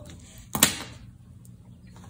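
A single brief rustle of folded paper being handled, about half a second in.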